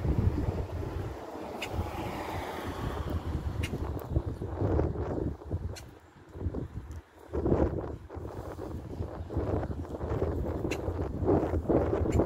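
Wind buffeting the phone's microphone in uneven gusts, a low rumble that drops away briefly about six to seven seconds in.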